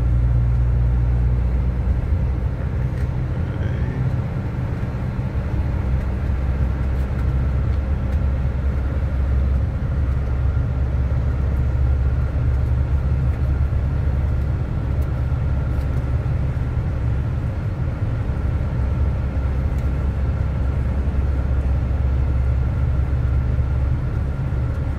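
Car driving along, heard from inside the cabin: a steady low engine and road drone with tyre noise.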